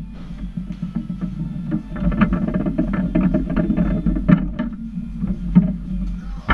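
Lettner foosball table in play: quick clicks and knocks of the ball and figures against the rods and walls, thickest in the middle of the stretch with a few sharper strikes, over guitar music in the background.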